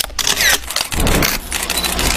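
Edited-in intro transition effects: a burst of noisy whooshing with a short pitch sweep about half a second in and several sharp clicks.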